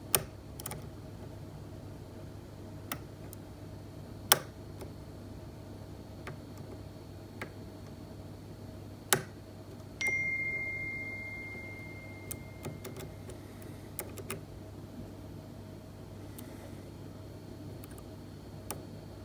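A dimple pick and tension wire working the pins of a Tesa T60 dimple cylinder clamped in a metal vise: scattered small sharp clicks, a few seconds apart. About ten seconds in, a short ringing tone starts suddenly and fades over about two seconds.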